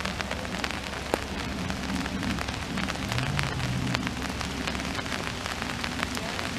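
Steady rain, with many separate drops ticking sharply close to the microphone, one louder tick about a second in.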